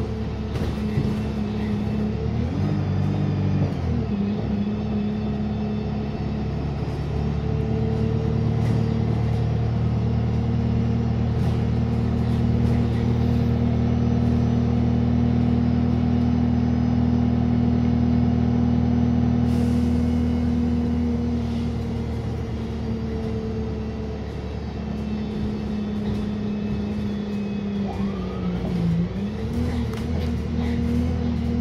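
Wright StreetLite single-deck bus heard from inside the saloon while driving: a steady engine and drivetrain note. Its pitch steps up briefly a few seconds in, holds steady through the middle, sinks and dips low near the end, then climbs again.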